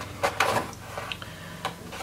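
Sheets of chalkboard scrapbook paper being handled and flipped over: a few light rustles and ticks of paper.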